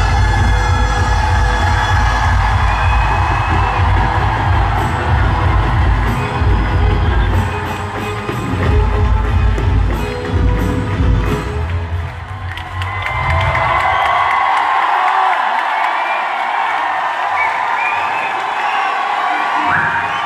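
Loud live Punjabi concert music with a heavy bass beat, over an audience cheering and shouting. About two-thirds of the way through the music stops, and the crowd keeps cheering.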